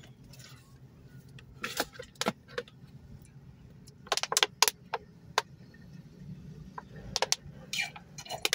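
Thin plastic water bottle crinkling and crackling in the hand as it is drunk from: a few sharp crackles about two seconds in, a cluster around four to five seconds, and more near the end. A low steady hum sits underneath in the car cabin.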